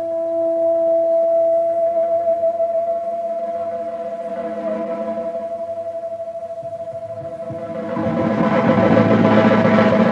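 Electric guitar holding one long sustained note with a fast, even wavering, like a vibrato or tremolo. The note fades a little, then the playing grows louder and busier over the last two seconds, in a blues-rock guitar passage.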